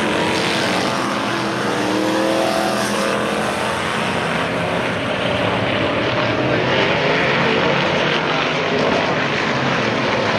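Several winged vintage race cars' engines run on the oval at once, a dense, loud drone whose pitch rises and falls as the cars pass and change speed.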